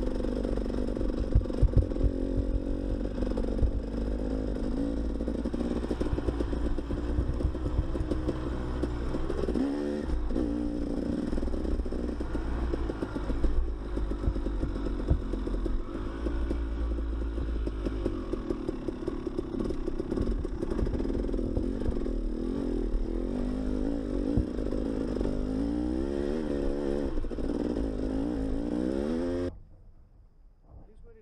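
Dirt bike engine running at low trail speed, its pitch rising and falling as the throttle opens and closes, with scattered knocks and clatter over the rough trail. The sound cuts off suddenly near the end.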